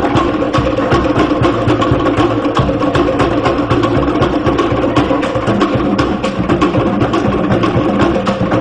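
Cook Islands drum ensemble playing ura pa'u drum-dance music: wooden slit drums (pate) and skin drums beating a fast, steady rhythm without singing.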